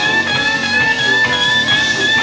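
Live rock band jamming without vocals: an electric guitar lead holds one long high note over bass and drums.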